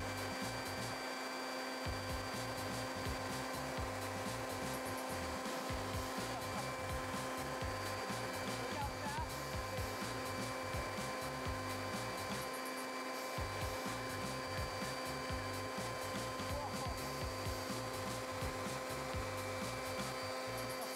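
Corded electric leaf blower running steadily, a constant hum of one pitch with a rush of air.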